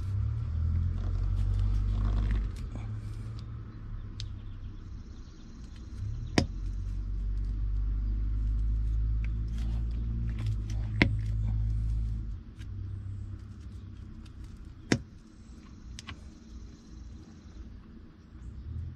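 Hand cutters being forced through a thick motor battery cable, with sharp snaps as the copper strands give way, the loudest about six, eleven and fifteen seconds in. A low rumble comes and goes under them.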